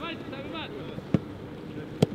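A football being kicked: two sharp thuds, one about halfway through and one at the very end, with faint shouting of players in the first moment.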